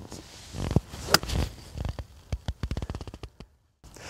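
A golf iron swung through a shot, with one sharp strike about a second in, then a run of quick faint clicks before the sound cuts off shortly before the end.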